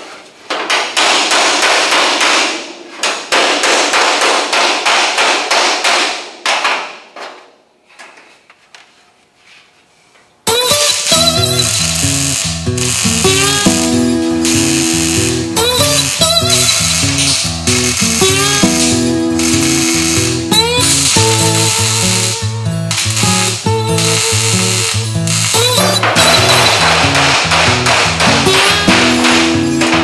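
A MIG welder's crackling hiss in short runs, welding a sheet-metal floor pan, for the first six or seven seconds, then dying away. From about ten seconds in, background music with a steady beat and bass line.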